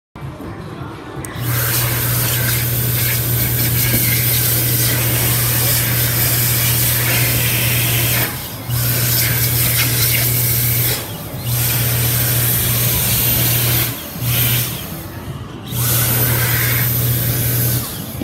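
Dyson Airblade dB hand dryer blowing at full power: a loud, steady rush of air over a low motor hum. It starts about a second in, then cuts out for a moment and restarts four times, each time its sensor is triggered again.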